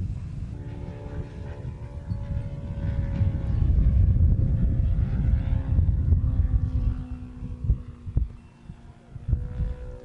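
A radio-controlled model airplane's engine drones in the air, its pitch falling slowly, with heavy wind rumble on the microphone. A few short knocks come late on.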